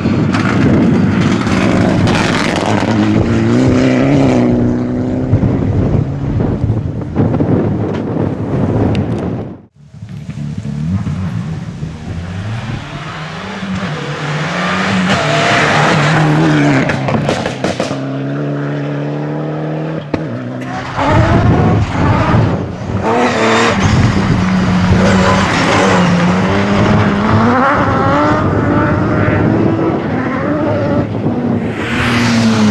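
Rally cars at speed, one after another, with abrupt cuts about ten and twenty-one seconds in: engines revving hard, their pitch climbing and dropping with gear changes. The first is a Mitsubishi Lancer Evolution rally car.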